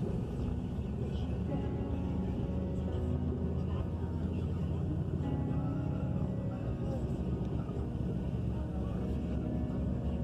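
Steady low drone of a road vehicle's engine and tyres, heard from inside the cabin while it drives.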